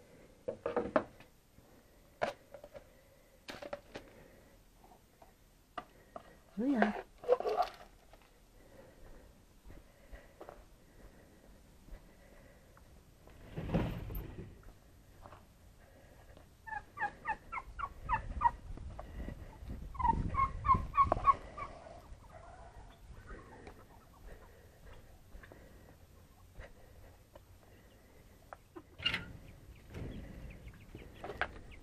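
A turkey tom gobbling: two quick runs of short, rattling notes, about seventeen and twenty seconds in. Earlier there are scattered knocks and clatters from things being handled, and a low rumble.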